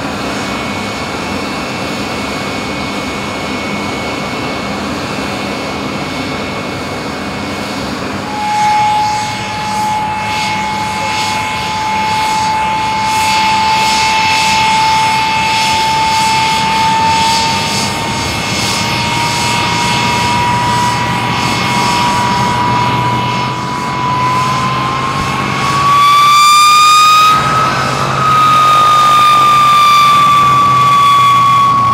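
Jet aircraft turbojet engine running on the ground, a steady engine noise at first. After that a clear whine climbs slowly in pitch as the engine spools up, and near the end a louder, higher whine with several tones comes in.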